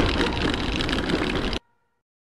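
Steady street noise with a vehicle running, cut off abruptly about one and a half seconds in.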